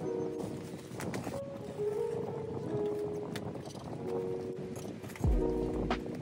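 Soft background music over crinkling and rustling plastic as a bubble-wrap mailer bag is torn open and the cardboard box inside is opened, with small clicks. About five seconds in the music grows louder with a bass line.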